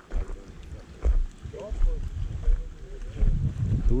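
Wind buffeting the microphone in uneven low gusts, about a second in and again toward the end.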